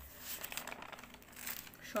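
Paper pages of a bound notebook being handled and turned over, a dry rustling and crinkling.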